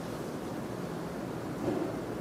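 Steady low hiss of room tone and microphone noise, with a faint soft sound near the end.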